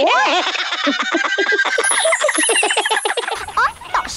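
Cartoon characters' voices laughing in fast, repeated high-pitched pulses. The laughter stops about three seconds in.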